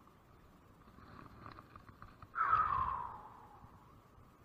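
A man's loud, breathy exhale, like a sigh, falling in pitch over about a second, a little past halfway through, after a few faint clicks of handling.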